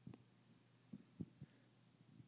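Near silence: room tone with a few faint, short low thumps.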